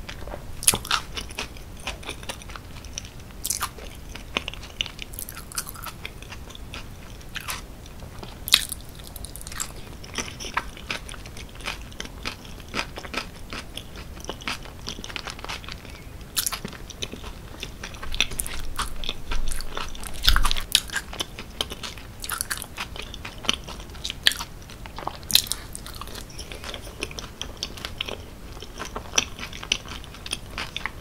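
Close-miked chewing of cheese-sauce-covered fries with browned onions: irregular short sharp mouth clicks and smacks throughout. A busier stretch of eating comes about two-thirds of the way through, with a low thump.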